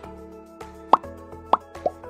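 Three quick rising bloop pop sound effects of an animated subscribe button, the first about a second in and the other two close together near the end, over background music with sustained notes.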